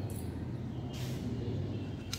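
Steady low background rumble, with a short scraping rustle about a second in as a spatula is dipped into a plastic bottle of ferrous ammonium sulphate powder.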